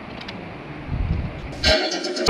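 Low, steady rumbling noise on a phone or webcam microphone, then about a second and a half in a sudden loud, heavily distorted sound with a pitched buzz cuts in: the start of a distorted logo soundtrack.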